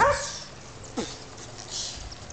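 A child's voice making short non-word yelps: a loud one with a falling pitch at the start and a shorter one about a second later, with a brief hiss near the end.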